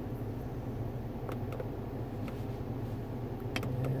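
Steady low hum of a 2003 Cadillac's engine idling, with a few soft clicks from the keys of a GM Tech 2 scan tool being pressed, two of them close together near the end.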